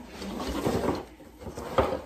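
Rustling and clattering as ribbon wands slide out of a tipped cardboard shipping box onto a wooden table, with a sharp knock near the end.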